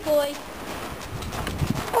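Children's footsteps crunching unevenly across loose gravel as they run, with a brief voice at the start.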